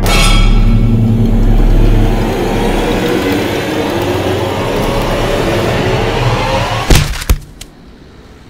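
Cinematic sound design for a fall: a sudden loud rushing swell with a deep rumble and a tone that climbs slowly over several seconds, cut off by two heavy impacts about seven seconds in, the body striking below.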